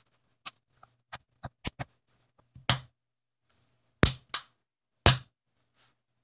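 Plastic carpet-gripper parts being pressed down into a hole in a rubber floor mat: a run of sharp clicks and knocks, the loudest few coming between about three and five seconds in.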